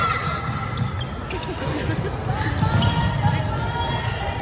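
Indoor ultimate frisbee on a sports hall's wooden floor: trainers squeaking and footsteps thudding as players run, with players calling out. The hall adds echo.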